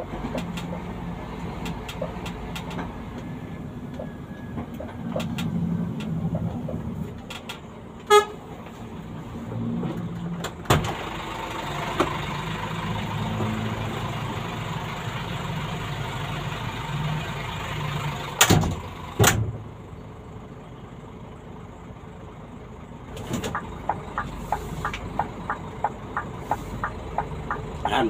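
Vehicle engine running with road noise, heard from inside the cab while driving slowly. There is a brief horn toot about eight seconds in, and several sharp knocks later on.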